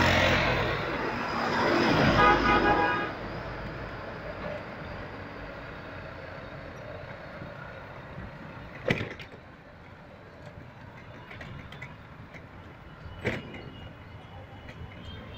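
Vehicle horns honking in dense road traffic during the first three seconds, then a steadier traffic hum with two sharp knocks, about nine and thirteen seconds in.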